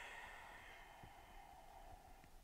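A woman's long, slow breath out, faint and gradually fading away.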